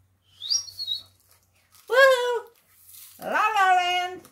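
A dog whining: a short high squeal about half a second in, then two longer pitched whines, the first falling in pitch about two seconds in, the second rising and then held near the end.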